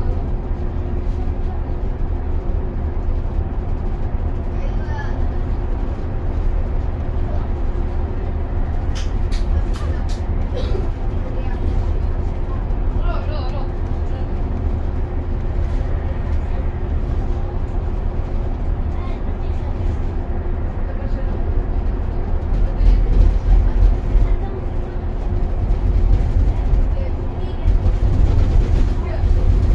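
Cabin noise of a bus cruising on a highway: a steady low engine and road rumble with a constant hum. Near the end the rumble grows louder for a few seconds.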